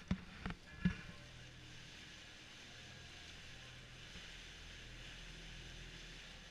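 Small canal tour boat's motor running with a steady low hum, water and hull noise over it, and three sharp knocks in the first second.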